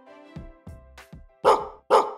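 Two short, loud dog barks about half a second apart near the end, over soft, steady music.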